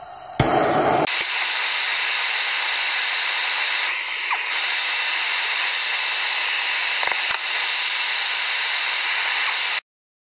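Propylene hand torch lit with a pop about half a second in, then burning with a loud, steady hiss that cuts off suddenly near the end. Two light knocks come about seven seconds in.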